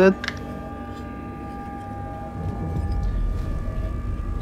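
Handling noise from an airsoft helmet and its mount parts: a light click just after the start, then low knocking and rubbing in the last second and a half as the helmet is picked up and moved on the metal table.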